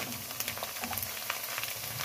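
Chopped onions frying in hot oil in a metal pan: a steady sizzle with fine, rapid crackles.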